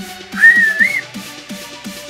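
A loud finger whistle, blown through a ring of fingers held to the tongue: one short call of well under a second that rises, holds, then rises again at the end. Electronic background music with a steady beat runs underneath.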